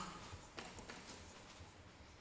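Faint footsteps of shoes on a wooden stage floor: a few light knocks in the first second, then quieter.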